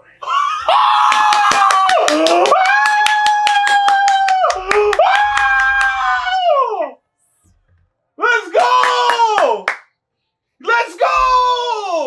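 A long, high, sustained yell of about seven seconds with fast hand clapping under its first half, followed by two shorter yells.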